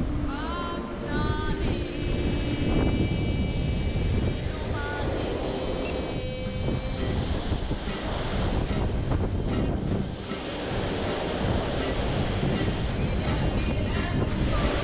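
Wind buffeting the microphone over the rush of a ship's wake, under background music. The music has held tones at first and a steady beat from about halfway in.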